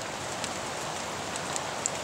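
Steady outdoor background hiss in a forest, with a few faint ticks.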